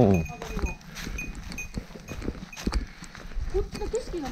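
Footsteps on a dry, leaf-covered dirt trail at a walking pace, an uneven run of soft crunches and knocks, with a voice trailing off in the first moment.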